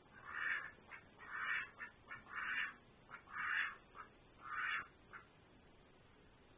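Domestic duck quacking repeatedly: five quacks about a second apart, with short softer quacks in between.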